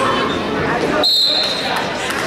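A referee's whistle blown once about a second in, a single steady shrill blast held for about a second, over the voices and shouts of a crowd in a gym.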